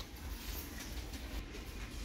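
Faint store room tone: a steady low rumble with light rustling as a wooden sign is handled on a metal wire shelf.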